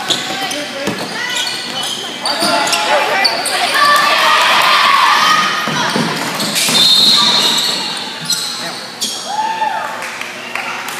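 Basketball bouncing and sneakers squeaking on a hardwood gym floor, echoing in the hall. Spectators shout and cheer, swelling through the middle and dying back near the end.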